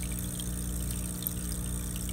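Aquarium aeration running: a steady electric hum with water bubbling from an airstone, and small scattered ticks of bursting bubbles.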